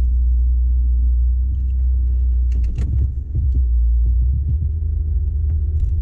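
Low, steady rumble of a moving car heard from inside the cabin: road and engine noise. A few brief clicks and knocks come about halfway through.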